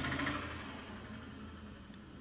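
Quiet background hiss with a faint low hum, slowly fading away, with no distinct sound event.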